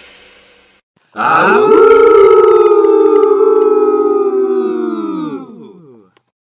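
A pack of wolves howling together, several overlapping howls starting about a second in, held level, then sliding down in pitch and fading out near the end.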